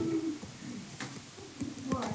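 A person humming a drawn-out, wavering note for the first half-second, then faint low murmuring of voices, with a couple of soft taps.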